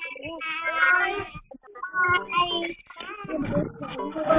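Several high-pitched, wavering vocal calls with short gaps between them.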